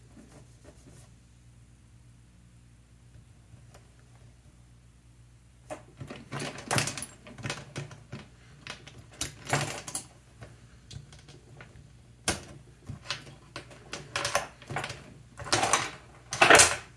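Metal lamp chain rattling and clinking as it is handled. After a faint, nearly still first six seconds, it comes in irregular runs of clicks and short jangles, with one sharp click about twelve seconds in.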